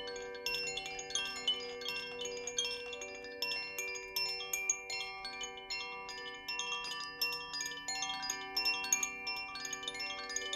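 Koshi chime, a hand-held bamboo wind chime, kept in motion so its clapper strikes the tuned metal rods inside. It gives a continuous stream of overlapping, ringing bell-like notes, several strikes a second.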